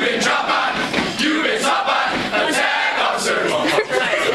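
A large group of men chanting and shouting together in unison, a warrant officer candidate class performing its class song in a large hall.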